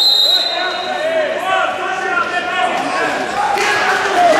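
A referee's whistle held in one long blast that fades away within the first second, followed by men's voices calling out across a large hall.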